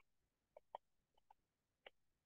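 Near silence with a handful of faint, short computer-keyboard key clicks as a few words are typed.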